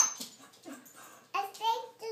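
A toddler's wordless vocalising: after a brief lull, a short high-pitched voiced sound starts suddenly about two-thirds of the way in.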